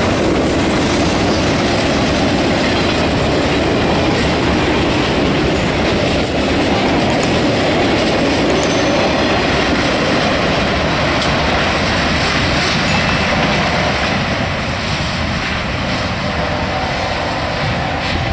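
A freight train rolling past close by: steel wheels on the rails making a loud, steady rumble with a run of clicks.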